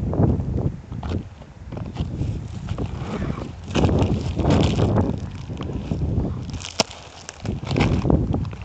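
Wind buffeting a phone's microphone in uneven gusts, mixed with rustling of dry scrub close by; a single sharp click comes about seven seconds in.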